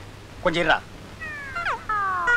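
A short voiced exclamation, then a comic sound effect of repeated falling, meow-like whining tones, starting just after a second in.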